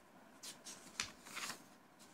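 Faint rustling of a sheet of paper being handled and shifted: a few short scratchy rustles, with one sharp click about a second in.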